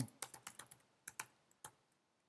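Computer keyboard typing a word: a quick run of about a dozen key clicks, dense at first, then sparser, stopping shortly before the end.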